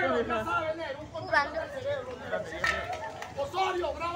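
Several people's voices talking and calling out over one another, indistinct chatter.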